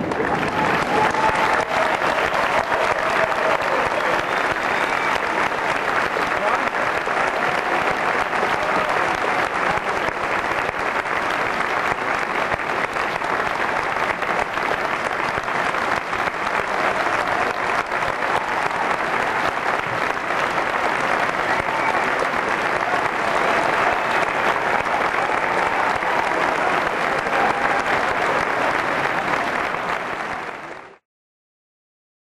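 A large audience applauding steadily for the whole stretch, with some voices calling out over the clapping.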